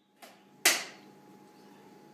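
A single sharp click about two-thirds of a second in, then a faint steady hum with a thin whine: the electric vent fan of a Sun-Mar Compact composting toilet running on mains power.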